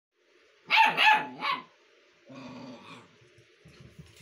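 Young puppy barking three times in quick succession, then a quieter growl lasting just under a second.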